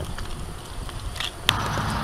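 Low outdoor rumble with a few faint clicks, typical of stroller wheels on pavement and wind on the microphone. About a second and a half in it switches abruptly to a steadier hiss and hum.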